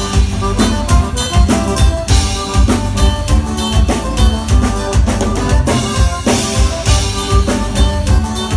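Live band playing an instrumental passage: a drum kit keeps a steady beat with kick and snare while accordion and acoustic guitar play, with no singing.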